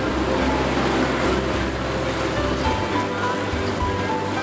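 An Amphicar's four-cylinder engine drones steadily as the amphibious car cruises on the water, its hull rushing through the wake with a constant splashing wash. The low engine note shifts about two-thirds of the way through. Music plays at the same time.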